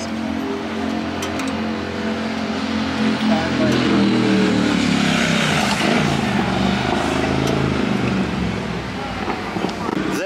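Motorcycle engine running at a steady idle. About three seconds in, another motorcycle passes on the street: its sound swells to a peak around the middle and then fades.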